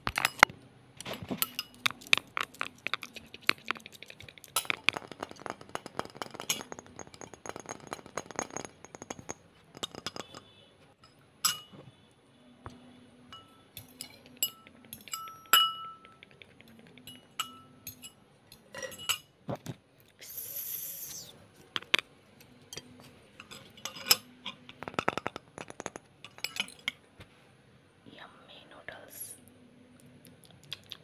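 Irregular close-up clicking, tapping and handling noises, with a few short ringing clinks of metal or glass, over faint background voices.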